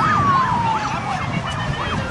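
Emergency vehicle siren in quick rise-and-fall yelps, about four a second, with a slower wailing tone gliding down underneath.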